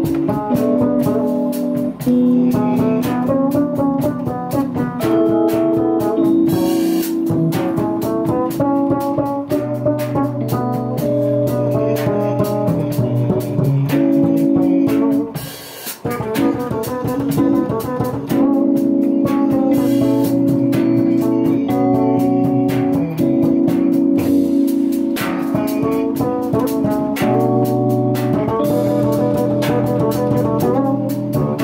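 Live jazz trio playing: Rhodes electric piano chords over a walking upright double bass, with drum kit and cymbals keeping time. The music dips briefly about halfway through, then carries on at full level.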